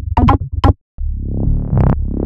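Electronic synth-bass loop samples auditioned one after another: a few short pitched bass hits, a short break, then about halfway through a held bass sound that gets steadily brighter, like a filter opening.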